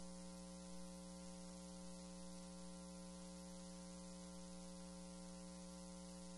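Faint, steady electrical hum: several fixed tones, the strongest just under 200 Hz, with an even high hiss over them, unchanging throughout.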